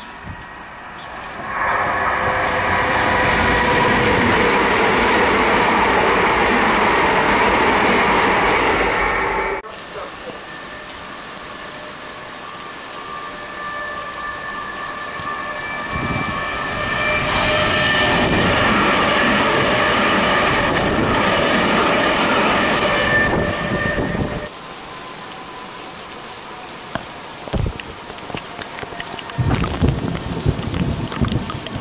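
Electric multiple-unit trains running through a station in rain. One passes with a steady whine over the rumble of the wheels and cuts off suddenly about ten seconds in. A second, with a higher whine, swells up and passes in the middle and also stops suddenly, leaving steady rain for the last few seconds.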